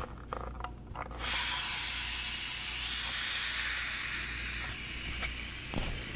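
Air hissing into a FoodSaver vacuum marinator canister as the lid's release knob is opened, starting suddenly about a second in and slowly fading over some four and a half seconds, after a few light clicks. The vacuum is being let out slowly so the beef broth is pushed into the freeze-dried steak.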